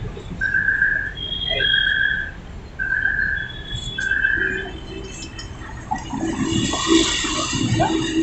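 A high whistle-like beep held at one steady pitch, repeated four times about once a second, each under a second long, stopping about five seconds in. A lower, intermittent tone follows in the second half.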